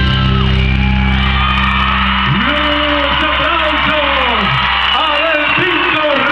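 A live rock band's final chord, held and ringing out, while the audience cheers and whoops; the cheering swells up about a second in, with rising and falling shouted whoops over it.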